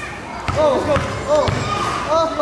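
A basketball dribbled hard on an outdoor concrete court, with bounces about a second apart, and people's voices around the court.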